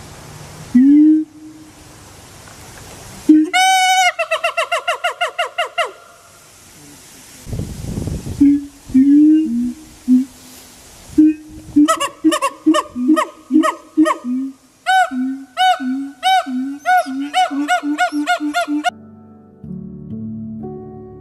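Siamang gibbons calling: low notes resonated by an inflated throat sac alternating with loud rising and falling whoops and barks. A quick run of calls comes a few seconds in, and in the second half the paired low notes and whoops repeat about twice a second, quickening before they stop shortly before the end.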